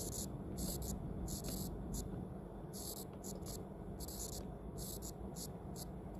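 Handwriting strokes on a phone's glass touchscreen: about a dozen short, soft scratches at irregular intervals as letters are written, over a faint steady room hum.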